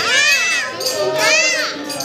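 Group devotional singing at a Hindu puja: high voices rise and fall in two long swoops over a steady drone.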